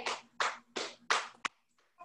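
A hand patting a thigh, four quick pats over about a second and a half, then quiet.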